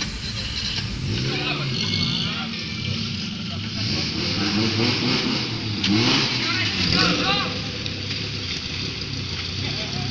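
Small off-road 4x4's engine revving unevenly as it drives through a muddy stream, with people's voices calling out over it.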